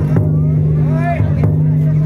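Harima autumn-festival float (yatai) being carried out: bearers chanting in drawn-out calls over the float's taiko drum beats, with a steady low hum underneath.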